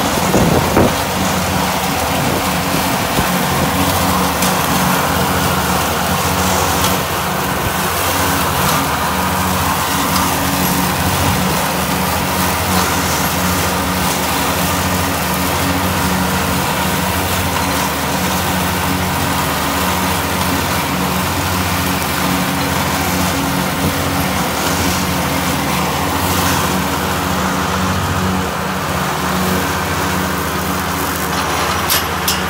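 Yanmar SA221 compact tractor's three-cylinder diesel engine running steadily under load, driving a PTO-powered rear finish mower cutting tall grass. There is a brief knock about a second in.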